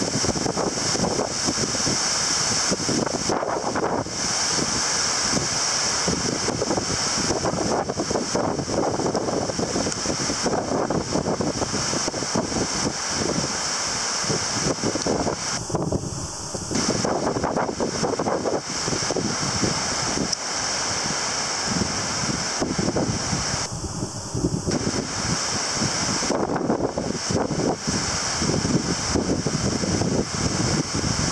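Strong gusty wind buffeting the microphone, over the steady wash of surf breaking on the beach.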